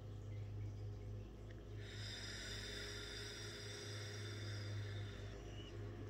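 Faint steady low hum, with a soft hiss that comes in suddenly about two seconds in and stops about three seconds later.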